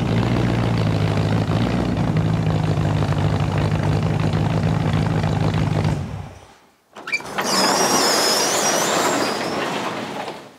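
A car engine running at a steady speed after revving up, fading out about six and a half seconds in. Then a different noisy rushing sound with a wavering high whistle.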